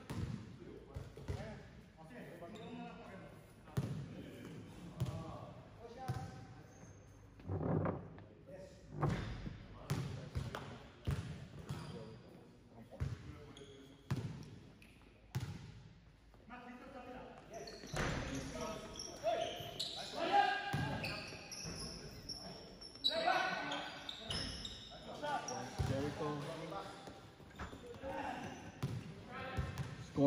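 A basketball bouncing on an indoor court, its repeated thuds echoing in a large sports hall. Players call out in the background, most of all in the second half.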